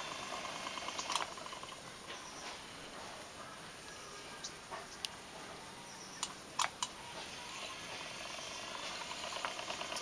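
Quiet background: a faint steady hiss, broken by a few brief soft clicks about a second in and again between five and seven seconds.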